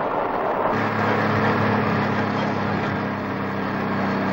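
Steady engine drone of a combine harvester with a rushing noise over it as it unloads grain through its auger into a truck; the low hum sets in under a second in and holds.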